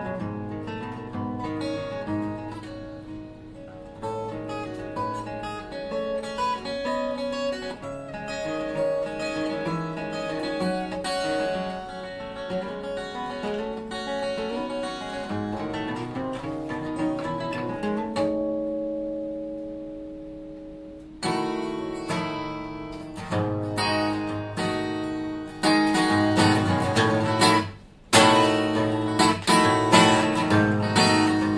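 Takamine ETN10C solid-wood acoustic guitar played fingerstyle: picked melody notes over bass, one chord left ringing and fading for about three seconds, then louder, harder-played chords with a brief break near the end. This is the guitar as it sounded before a week of ToneRite vibration treatment.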